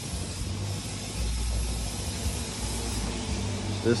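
Uneven low rumble under a steady hiss: general workshop background noise with no distinct event.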